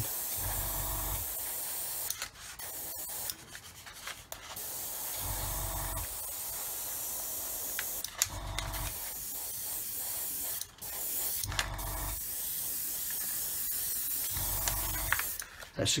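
Airbrush spraying black paint with a steady hiss of air and paint, breaking off briefly a few times. A low hum comes and goes every few seconds.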